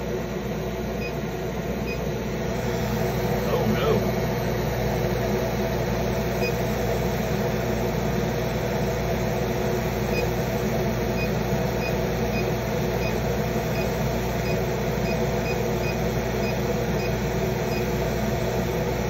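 Steady hum of a laser engraver running, with several steady low tones from its fans and electronics. In the second half, faint short high pips repeat every half second or so.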